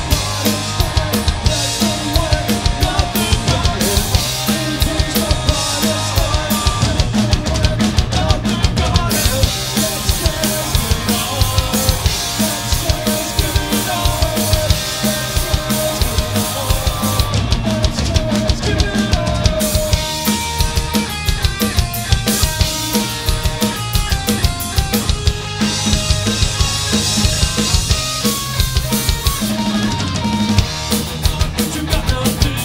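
A live rock band playing an instrumental passage: drum kit keeping a steady, driving beat under electric guitar and bass guitar, with no singing.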